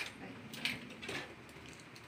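A few light clicks and knocks from a makeup trolley case being handled, its trays and latches moved.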